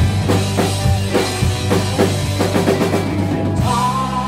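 Live rock band playing an instrumental passage: a drum kit struck in a busy pattern of kick and snare hits, most densely through the middle, over held electric bass and electric guitar.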